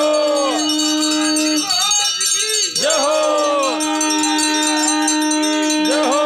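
Ringing, bell-like tones over a strong steady held note. The held note breaks off about one and a half seconds in and returns about a second later. Sweeps rising and falling in pitch come about every three seconds.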